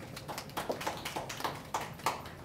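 Light, scattered applause from a small group of people, with sharp separate claps about six or seven a second that grow louder after about half a second in.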